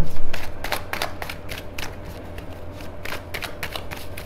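A deck of tarot cards being shuffled by hand: a quick, irregular run of card clicks and slaps over a low steady hum.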